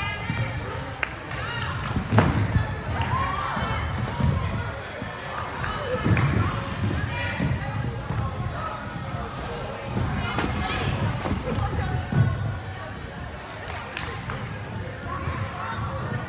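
Dull thuds of gymnasts' hands and feet landing on a padded tumbling track, several sharp impacts a few seconds apart, with children's voices in the background. The loudest landings come about two seconds in and about twelve seconds in.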